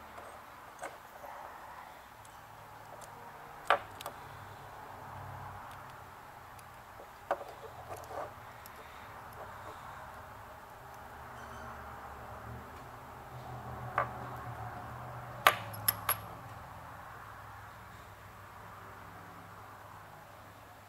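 Small metal parts of a model steam engine connecting rod clicking and clinking as they are fitted together by hand with a hex key and pin. The clicks are sparse and short, the loudest a quick cluster of three about three-quarters through, over a low steady hum.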